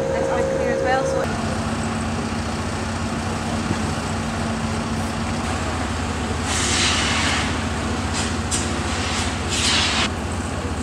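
A steady low engine-like drone, with a voice briefly at the start. Loud bursts of hissing come in about six and a half seconds in and again just before the end.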